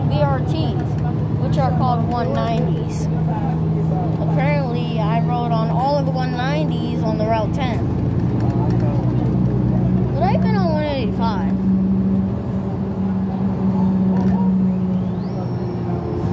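Cabin of a 2017 New Flyer XD40 diesel city bus under way: the steady drone of its engine and drivetrain, its pitch rising about ten seconds in as the bus picks up speed, with people talking over it.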